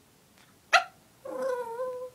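A small pet dog gives one short, sharp bark a little under a second in, then a drawn-out, steady whining vocalisation, its chattering 'talk' back to its owner.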